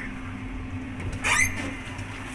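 Steady low hum and rumble inside an elevator cabin, with one short sharp sound about a second and a half in.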